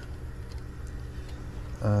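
Steady low hum from the heat pump's outdoor unit, with a few faint ticks of handling at the control board. No click comes from the reversing valve solenoid, which is suspected to have come unplugged.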